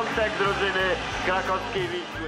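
A man's voice from the original television match commentary, quieter than the narration, over steady background noise.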